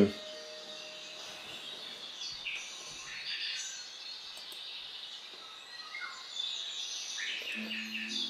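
Faint, scattered bird chirps over low steady background noise in a pause between spoken sentences.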